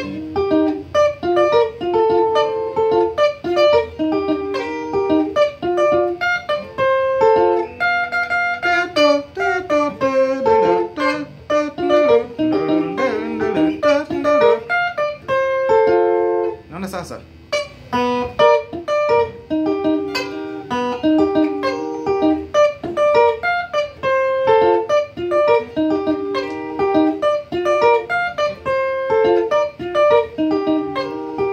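Electric guitar playing a fast Kamba benga pattern of quick single picked notes, the phrase repeating over and over.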